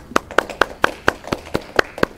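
Hand clapping: about nine sharp, evenly paced claps in two seconds, applause for a speaker who has just finished.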